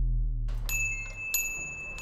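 A low droning tone fades away while a small bell is struck twice, under a second apart, and keeps ringing as a high steady tone over faint room ambience.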